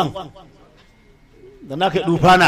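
A man's voice speaking: a drawn-out syllable that falls in pitch and trails off, a pause of about a second, then speech starts again near the end.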